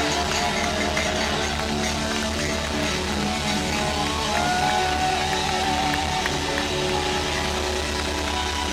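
Live band music played loud through a concert sound system: electric bass and drums under sustained chords, with a wavering higher melody line over them.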